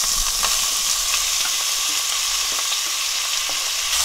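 Raw, drained julienned potato sticks sizzling steadily in hot oil in a frying pan, just after being tipped in, with a few light taps as they are stirred.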